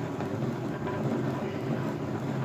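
Hand-cranked plastic yarn ball winder turning steadily, a continuous whirring rattle as yarn winds onto the spinning spindle into a cake.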